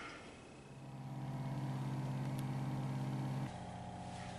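A steady low-pitched hum fades in, holds, and cuts off abruptly about three and a half seconds in, leaving a fainter hum.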